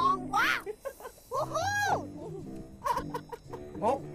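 Excited shouting and squealing voices, with high cries that rise and fall in pitch, over background music.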